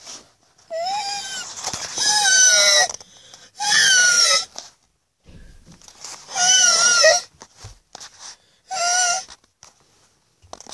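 A series of five loud, raspy screeching calls, each under a second long and wavering in pitch, with short quiet gaps between them.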